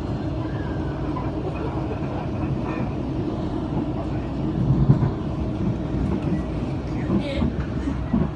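Steady low rumble of a passenger train carriage running along the track, heard from inside, with faint voices over it. The rumble swells louder for a moment about five seconds in.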